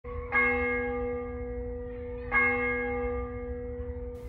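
A church bell striking twice, about two seconds apart, each stroke ringing on and slowly fading.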